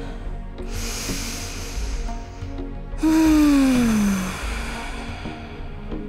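A woman breathing deeply: a long audible inhale, then about three seconds in a voiced sighing exhale that falls in pitch and trails off into breath.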